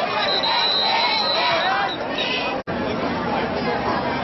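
Football crowd in the stands shouting and cheering, with a shrill whistle held for about a second and a half near the start. The sound breaks off for an instant about two-thirds through, at a cut in the recording.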